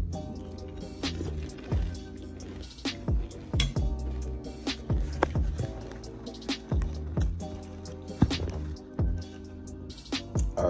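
Close-up wet chewing and mouth smacking of someone eating, heard as many short irregular clicks over background music with a steady bass.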